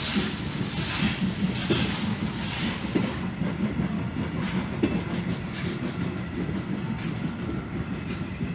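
Vintage passenger coaches rolling past, wheels rumbling and clattering over rail joints. Over them the exhaust chuffs of the TKh steam tank locomotive hauling the train come a little under a second apart and fade out about three seconds in as the train draws away.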